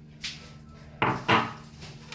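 A soft knock, then two sharp clinks about a third of a second apart just past the middle: kitchen utensils or dishes striking a frying pan while cooking.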